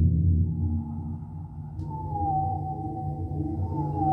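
Live experimental electronic music. A low drone fades away in the first second, and a high tone slides in and glides slowly downward, with a faint click just before the two-second mark.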